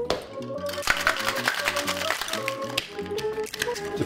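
Ice rattling inside a stainless-steel tin-on-tin cocktail shaker being shaken hard, a fast continuous run of clicks and knocks, over background music.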